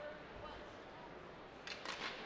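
Faint crowd murmur in an ice hockey arena, picked up by the broadcast microphones, with a few sharp clacks near the end.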